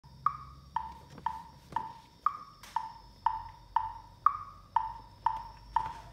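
Metronome clicking steadily at two beats a second, the first of every four beats higher in pitch: a count-in in four before the sight-singing begins.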